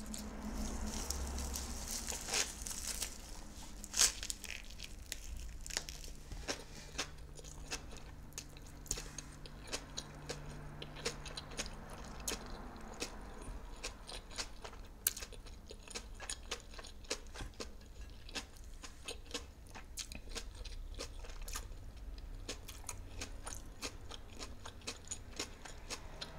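Close-miked chewing of a nori-wrapped Japanese hot dog taco: crisp seaweed crackling and crunching in irregular sharp clicks. The crackling is densest in the first few seconds, with one loud crunch about four seconds in.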